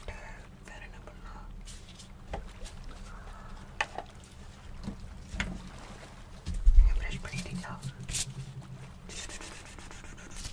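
Soft rubbing and scattered light clicks from handling objects right at the microphone, with a heavier low thump about two-thirds of the way through.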